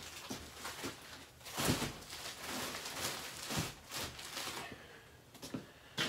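Footsteps and handling noises as a plastic-wrapped pack of toilet paper is carried across a small room and set on a shelf: a run of irregular rustles and knocks, the loudest about two seconds in.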